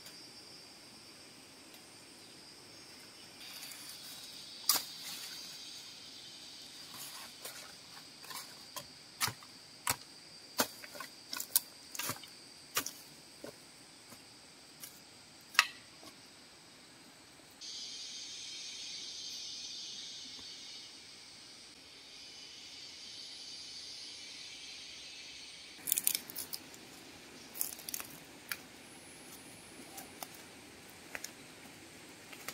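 A run of sharp, irregular clicks and knocks from hand work, over a steady high insect buzz. In the middle stretch a hiss sets in for several seconds, then the knocks return near the end.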